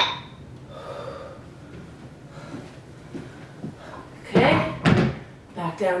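Two metal dumbbells clinking together once overhead with a brief high ring, then a fainter ring about a second later. A woman's voice follows near the end.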